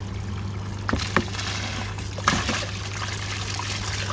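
Dirty water pouring out of a black waste hose into a plastic tub as an EasyPod pond filter is drained to flush out its sludge, with a steady low hum underneath and a couple of brief splashes.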